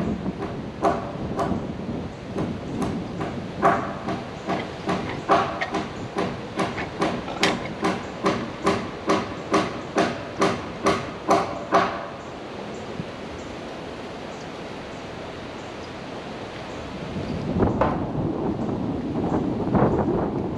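Hammer driving nails into wooden board siding: a run of about twenty sharp, ringing blows that speed up to about two a second, then stop. Near the end comes a rush of wind noise on the microphone.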